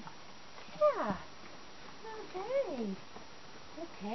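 Two short wordless vocal sounds with sliding pitch from a woman cooing to a horse. The louder one, about a second in, drops steeply in pitch, and a softer rise-and-fall comes near three seconds.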